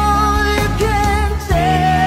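Slow rock song: a singer holding long notes over a strong bass line and backing band, with a new sung phrase starting about one and a half seconds in.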